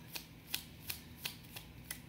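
Oracle card deck being shuffled by hand, the cards snapping against each other in quick regular clicks, about three a second.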